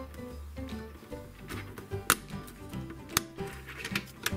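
Background music, with a few sharp clicks as plastic Playmobil cannon parts are pressed into place by hand, the loudest about two and three seconds in.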